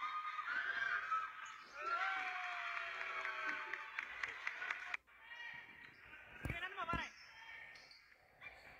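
Indoor basketball game: players and spectators calling out over one another in the gym, then, after an abrupt cut about five seconds in, a basketball bouncing twice on the hardwood floor.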